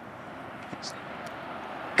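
A pickup truck approaching, its steady rumble growing slightly louder.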